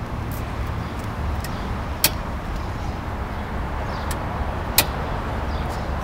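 Steady outdoor background noise with a low rumble, broken by a few sharp clicks, the loudest about two seconds in and near five seconds.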